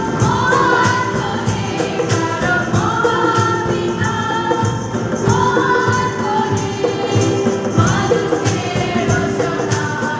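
A group of women singing a hymn together, accompanied by strummed acoustic guitars, hand drums and a keyboard, with a steady percussion beat and jingling hits.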